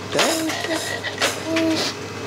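Electronic beeping notes from a baby's battery-powered light-up activity cube toy as its panels are pressed: two short, steady held tones.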